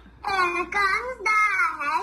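A young girl chanting a Quran recitation in a melodic, drawn-out voice, in short phrases whose pitch rises and falls, heard through a computer's speaker.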